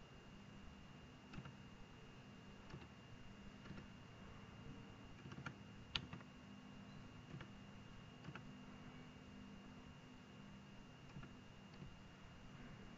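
Near silence with faint, scattered clicks of a computer mouse and keyboard, about eight of them, the loudest about halfway through, over a faint steady electrical hum.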